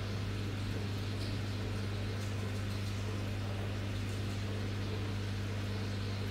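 Aquarium pump humming steadily with a low, even drone, under a faint hiss of running water.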